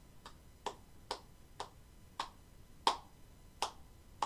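One person applauding alone with slow, single hand claps, about seven of them, spaced roughly half a second to three-quarters of a second apart.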